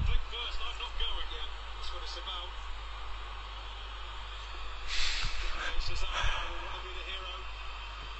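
Faint speech in the background over a steady low hum, with a short rush of noise about five seconds in.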